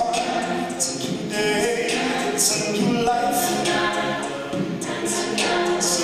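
A cappella group singing live: a lead voice over the group's layered backing harmonies, with sharp hissing accents up high about once a second.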